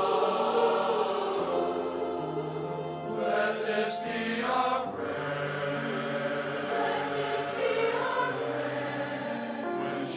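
A large mixed choir of men and women singing in harmony, holding long sustained chords that change every second or so.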